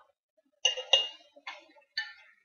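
A spoon clinking against glass canning jars and a glass bowl as portions of clams are tapped in, a few sharp taps with a brief ring, the loudest two coming close together just under a second in.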